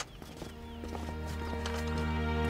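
Drama background music of long held notes, swelling louder, with a sharp knock at the start and a few light footsteps tapping over it.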